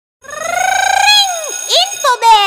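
High-pitched, voice-like call in a logo jingle: one long note that slowly rises, then swoops down, followed by a short upward chirp near the end.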